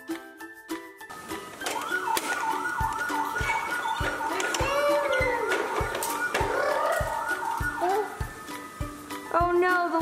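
A fast, repeating wavering siren yelp over background music with a steady beat; the siren starts about a second in.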